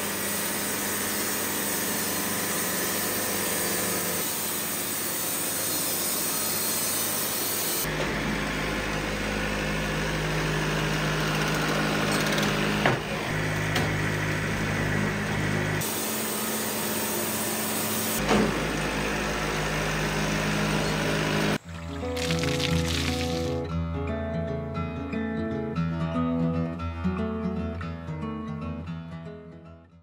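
Wood-Mizer LT70 band sawmill running, its blade sawing lengthwise through a cherry cant in a steady, unbroken cut. About 22 seconds in, the sawing cuts off abruptly and music plays to the end.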